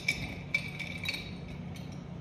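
Ice and a straw clinking against the inside of a glass mason jar as iced coffee is stirred: a run of light clinks, the two sharpest near the start.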